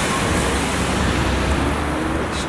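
A car driving past close by: a steady rush of tyre and engine noise with a low rumble.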